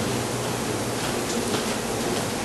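Steady hiss with a low hum underneath: the room tone and recording noise of a classroom microphone.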